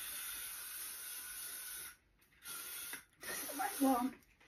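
Aerosol hairspray sprayed onto hair: one steady hiss of about two seconds, then a second, shorter spray of about half a second.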